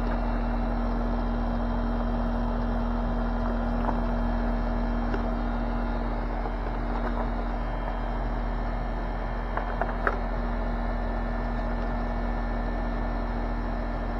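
Air-conditioner condenser unit running with a steady hum and a constant low tone, with a few light clicks of plastic packaging and brass fittings being handled about ten seconds in.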